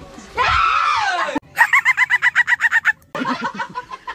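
Excited screaming of joy and disbelief: a long high scream, then a rapid high-pitched pulsing cry of about ten pulses a second for about a second and a half, then shouting.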